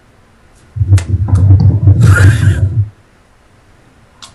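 Stifled laughter and breath blown right onto the microphone: one loud, muffled, choppy burst about two seconds long, starting under a second in.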